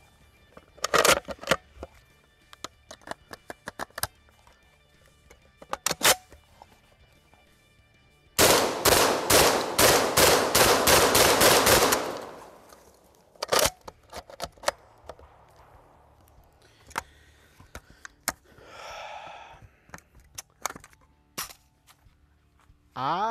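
Inter Ordnance XP AK-pattern 12-gauge semi-automatic shotgun fired in a fast string of shots, about three a second, for roughly four seconds. Before it come scattered clicks and knocks of the gun being handled, and a few more follow.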